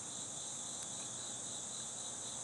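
Steady high-pitched insect chorus, typical of crickets calling at dawn.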